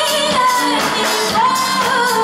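Live R&B band performance: a female vocalist singing held, sliding notes into a microphone over keyboards and a drum kit, amplified through a venue PA.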